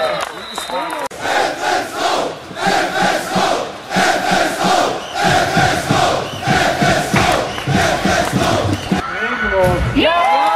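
Spectators in a sports hall chanting in unison, a loud, evenly repeating call from many voices that runs for about eight seconds.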